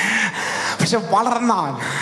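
A man's voice through a microphone, speaking expressively: a breathy gasp at the start, then a drawn-out, rising-and-falling vocal phrase.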